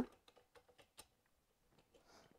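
Faint scattered clicks as the adjustment knob on a free-standing reflex bag's pole is unscrewed, the most distinct about a second in; otherwise near silence.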